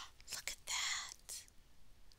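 A woman whispering softly, breathy and unvoiced, with a few faint clicks around it.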